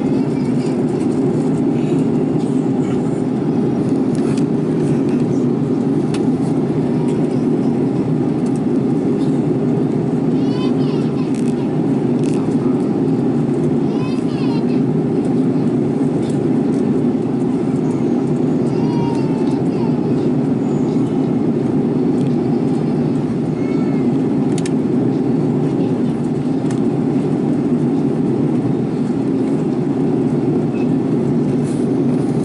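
Jet airliner cabin noise in flight: a loud, steady low rumble of engines and airflow heard from a window seat, unchanging throughout.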